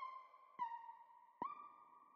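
Sparse, quiet synthesizer melody from a trap instrumental, without drums or bass: three high notes a little under a second apart, each struck sharply and sliding slightly down in pitch as it fades.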